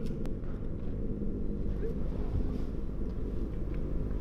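Steady low rumbling drone, an engine-like spaceship hum that runs on evenly without rising or falling.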